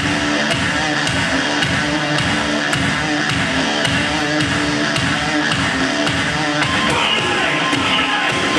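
Loud music with a steady beat, about two beats a second. The sound of the music shifts about seven seconds in.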